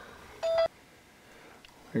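A single short electronic beep, a steady tone about a third of a second long that switches on and off sharply.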